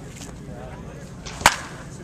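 Crack of a wooden baseball bat hitting a pitched ball in batting practice: one sharp, loud strike about one and a half seconds in.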